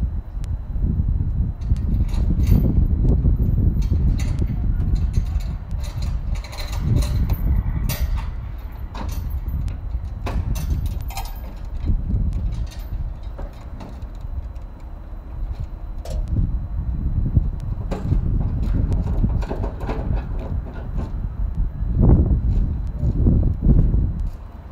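Wind buffeting the phone's microphone in an uneven low rumble, with scattered knocks and clatter throughout.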